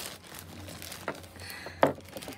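Thin plastic packaging bag rustling and crinkling as hands pull it open, with one sharp snap of the plastic near the end.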